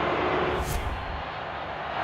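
Steady background noise of a stadium broadcast feed in near-empty stands, with a short high hiss a little under a second in.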